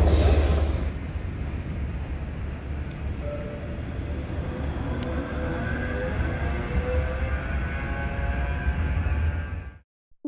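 About a second of loud, echoing station-hall noise, then a Bombardier M5000 tram drawing into a stop: its traction motors give a whine of several tones that glide slowly in pitch over low rumble, until the sound cuts off just before the end.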